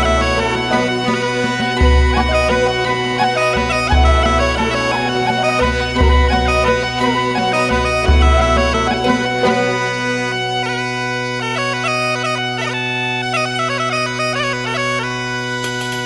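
Galician gaita (bagpipe) playing a traditional melody over its steady drone. A deep low note pulses about every two seconds until about ten seconds in, after which the drone and melody carry on alone.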